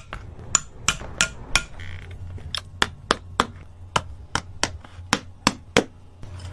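Shoemaker's hammer tapping in a string of light, sharp strikes, roughly two to three a second at an uneven pace.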